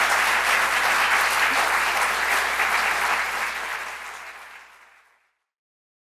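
Audience applauding at the end of a lecture, a dense steady clapping that fades out about four to five seconds in.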